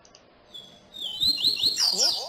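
Papa-capim (yellow-bellied seedeater) singing: a quick run of high, rising chirps that starts about half a second in and grows louder near the end.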